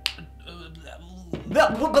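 A single finger snap at the very start, one sharp click, over quiet background music.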